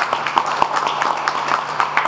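A small audience clapping: many separate, irregular claps several to the second.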